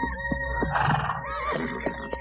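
Horse whinnying about a second in, a short wavering call, over sustained background music chords.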